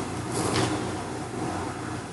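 Steady background noise: a low hum with a rumble under an even hiss.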